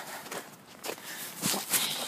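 Footsteps on snow as a person walks, several irregular steps.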